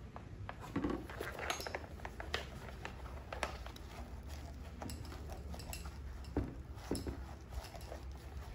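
Mizuno Samurai youth catcher's shin guard being handled and flexed: scattered light clicks, taps and rustles of the plastic shell and straps, over a low steady hum.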